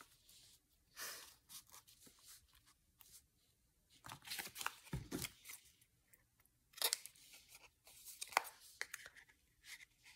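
Quiet scissors snips and rustling of paper cutouts being handled, short clicks in a few scattered clusters.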